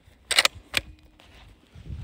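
Two sharp metallic clicks under half a second apart, the bolt of a DSR-1 bolt-action rifle being worked to chamber a round.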